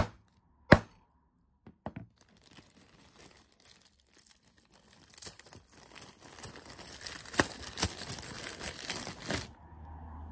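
Two sharp hammer blows on a quench-crazed fused-glass puddle inside a plastic zip bag, one right at the start and one under a second later. Then a crinkling, crackling run of plastic bag and snapping glass shards as hands bend the bagged glass, which breaks up easily along its crazing. It grows louder and stops suddenly near the end.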